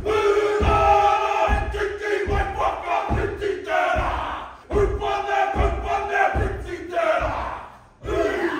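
Group of men performing a Māori haka: shouted chanting in unison, with a steady beat of low thumps from stamping and body slaps. The chant dies away near the end.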